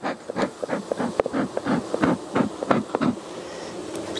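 Bellows bee smoker pumped rapidly, a quick even run of breathy puffs about three to four a second, blowing smoke into the freshly cracked gap between two hive boxes.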